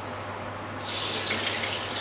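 Kitchen tap turned on about a second in, water running steadily into the sink.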